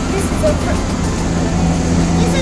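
Steady low drone and hum of gondola station machinery, a Pomagalski-built installation, running as cabins pass through the station. Faint voices sit over it.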